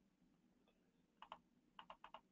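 Faint clicking at a computer, four quick clicks in two pairs, one pair about a second in and one near the end, over near silence.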